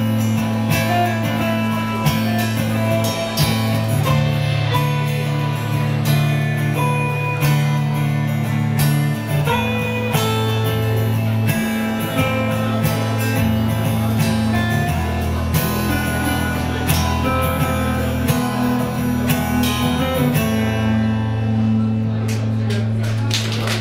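Live band playing an instrumental passage: a strummed acoustic guitar over an electric guitar, steady low bass notes and a drum kit, with no singing. The drums and cymbals drop out about a second before the end.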